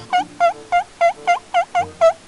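A comic sound effect of short, quick calls, about three a second, seven in all. Each call dips and then rises in pitch, like a squeaky warble.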